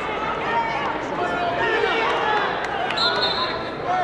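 Gym crowd shouting and talking over one another during a wrestling bout. About three seconds in, a referee's whistle blast lasts just under a second, stopping the action.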